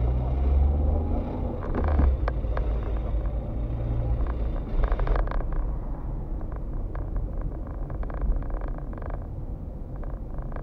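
Car engine and tyre noise heard from inside the cabin while driving. A low engine hum is stronger for the first four seconds, then gives way to steadier road noise.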